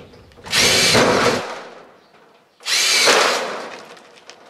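Cordless drill run in two bursts of about a second each, its motor whine rising as it spins up and falling away as it stops.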